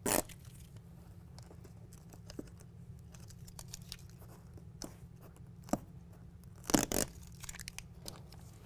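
Protective backing being peeled off self-adhesive Velcro strips: a short tearing rip at the start, a few faint crackles, and a louder double rip near the end.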